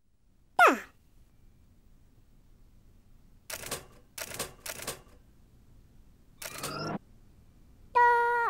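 Sparse cartoon sound effects over a quiet background: a short falling squeak about half a second in, three brief clattering bursts around the middle, and another short burst with a rising squeak near the end.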